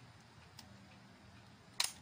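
Sony TCM-30 cassette recorder running in play with a faint steady motor hum, then a single sharp plastic click of a transport key being pressed near the end.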